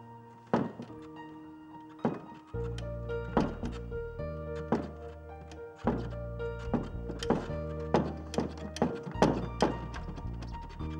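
Music of held keyboard-like chords, with repeated thumps over it that come faster and faster, from about one every 1.5 seconds to several a second near the end.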